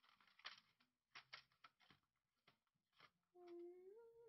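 Faint scattered clicks and rustles of small objects being handled on a tabletop, then a brief hummed voice rising slightly in pitch near the end.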